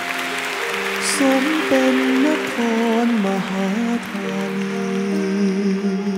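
A male vocalist sings a slow Thai ballad live over sustained band accompaniment. Audience applause runs under the first half and fades out.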